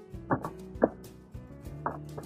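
Background music: sustained notes with three sharp struck or plucked hits, at about a third of a second, just under a second, and near the end.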